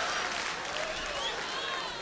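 Live comedy-club audience applauding, the applause and crowd noise dying down.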